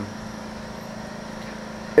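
A steady low hum under a faint hiss.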